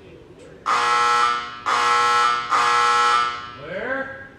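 Electric warning buzzer sounding three loud, steady blasts, each just under a second long with short gaps between. It is the alarm signal given before a debris impact shot at the test wall.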